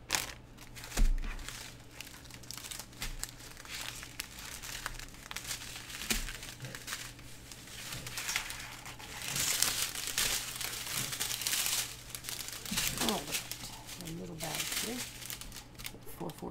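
Small plastic bags of diamond painting drills crinkling and rustling as they are handled, with a run of dense crinkling about nine to twelve seconds in. A low thump about a second in.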